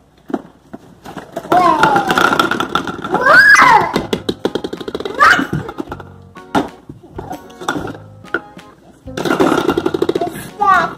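Children's excited wordless voices and a rising squeal, then plastic toy bowling pins and their cardboard box rattling and clicking as they are unpacked, with a quick run of ticks followed by scattered knocks.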